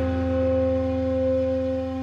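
Ambient background music in a Japanese style: a held chord of ringing tones over a low drone, slowly fading.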